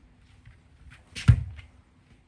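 A child popping up on a surfboard: a faint scuff, then one loud thump a little over a second in as his feet land on the board.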